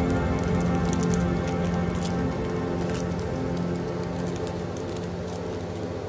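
Foil booster-pack wrapper crinkling as it is torn open by hand, with irregular crackles, over background music of held, slowly fading tones.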